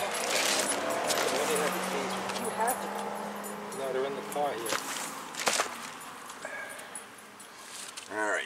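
Faint, indistinct talk, then a few sharp metallic clinks from a brake rotor being handled, the loudest about five and a half seconds in.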